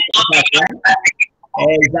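Voices coming through a video call, broken up and garbled. They drop out for a moment about two-thirds of the way in, and then a voice carries on clearly.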